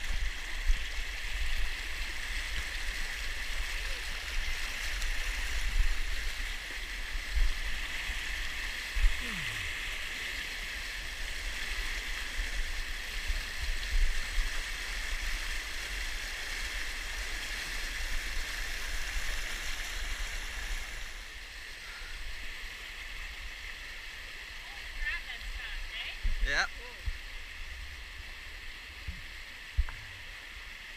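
River water rushing and splashing over boulders in a steady hiss that softens about two-thirds of the way through, with scattered low thumps.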